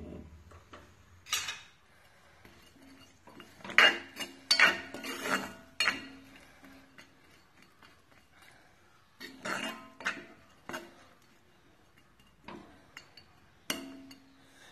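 A metal spoon clinking and scraping against a black iron kadai as fish pickle is stirred. The clinks come in several short bursts, with a quieter stretch in the middle.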